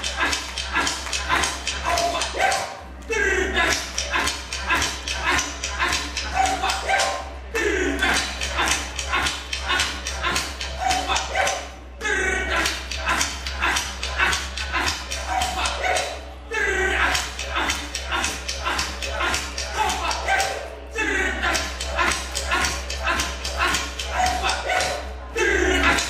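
Traditional Aboriginal dance song: chanting voices over a steady fast beat of sharp clicks. It repeats in phrases about four and a half seconds long, each set apart by a short break. A low steady hum runs underneath.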